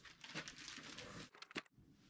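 Faint rustling and crinkling of plastic packaging and a cardboard box as parts are handled and unpacked, dying away shortly before the end.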